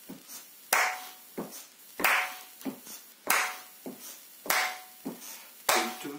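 Hand claps keeping a steady beat in a note-value rhythm exercise: a loud clap about every 1.25 seconds with softer hits in between.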